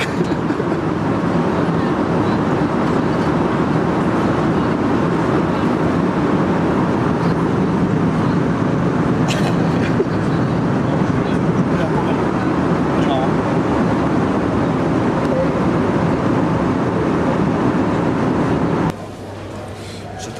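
Steady, loud drone of airliner cabin noise: the engines and the rush of air heard inside the passenger cabin. It cuts off abruptly about a second before the end.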